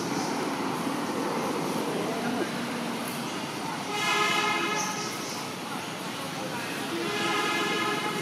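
A vehicle horn sounds two long, steady honks, one about halfway through and one near the end, over a steady hum of road traffic.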